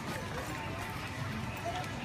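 Store ambience: steady background noise with faint, distant voices.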